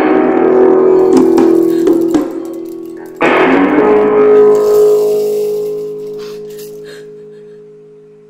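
Guitar chords strummed and left to ring: one chord held for about two seconds, then a final chord about three seconds in that rings out and slowly fades away, as at the close of a song.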